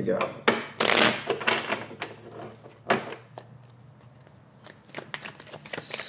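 A deck of tarot cards being shuffled by hand: a series of papery riffling and flicking bursts. There is a quieter pause in the middle and a run of quick card flicks near the end.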